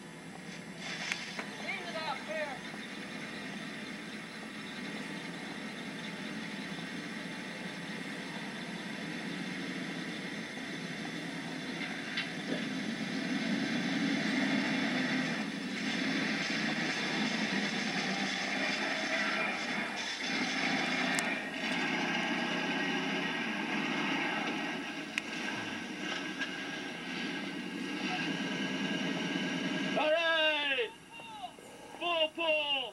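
Vehicle engine noise that grows louder and stays loud through the second half, from vehicles working to pull a stuck car out of mud, with brief voices near the start.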